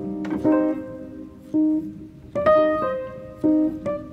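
Background music: piano notes struck one or two at a time in a slow melody, each ringing and fading.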